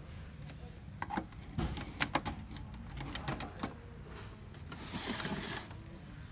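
Several sharp clicks and knocks in the first half, then a short rustling hiss about five seconds in, over a low steady hum.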